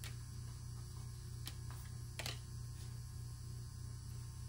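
Steady low electrical hum, with a few soft clicks as tarot cards are flicked and laid down on a table covered with other cards; the clearest click comes just after two seconds in.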